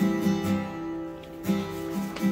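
Acoustic guitar strumming chords, the chords ringing between strums, with fresh strokes at the start and about a second and a half in.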